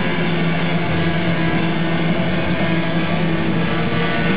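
Rock band playing live in an arena, holding a steady low droning chord with a thick hiss of amplified noise over it, recorded from the crowd.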